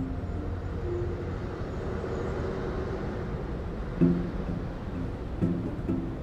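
A steady hum of distant city traffic, with soft plucked-string notes coming in about four seconds in and again near the end.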